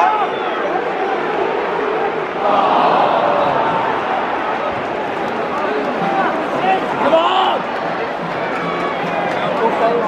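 Football crowd in a stadium stand: many voices talking and shouting at once, with louder shouts about two and a half and seven seconds in.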